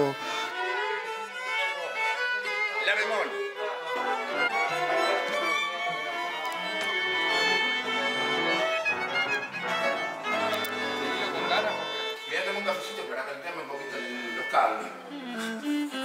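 A string section of violins and cellos playing a tango arrangement in sustained, overlapping bowed lines.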